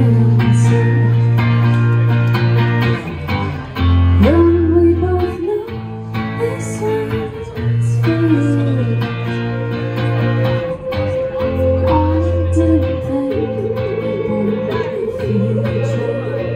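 Live indie rock band: a woman singing over electric guitar, electric bass and drums, with held bass notes changing every second or two under the drum hits.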